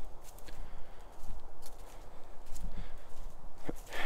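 Footsteps on dry fallen leaves and sticks on a forest floor, a few irregular rustling steps.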